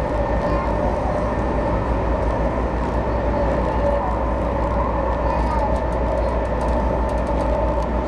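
Meitetsu 2200 series electric train running, heard from inside the front of the train: a steady rumble of wheels on rail with a steady high whine over it.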